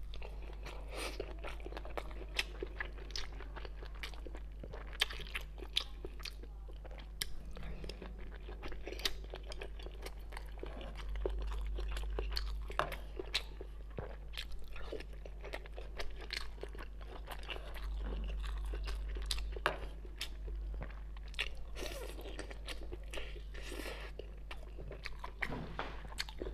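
Close-miked chewing and biting of a steamed bun filled with chives, egg, glass noodles and wood ear mushroom: irregular short mouth clicks and small crunches, with a steady low hum underneath.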